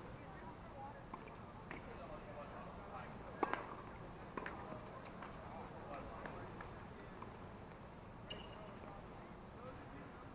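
Indistinct voices of people talking at a distance, with a few sharp knocks; the loudest knock comes about three and a half seconds in.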